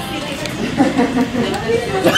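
Indistinct chatter of several people talking in the background.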